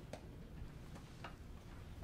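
Faint, sharp ticks about a second apart over quiet room tone, like a clock ticking.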